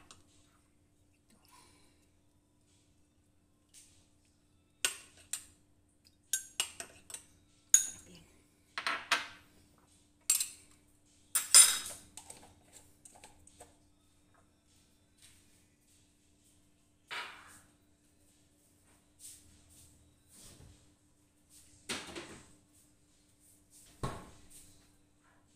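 A metal spatula clanking and scraping in a stainless-steel wok of stir-fried noodles, in short separate clatters with quiet gaps between. The loudest clatter comes near the middle, and the clatters thin out later on.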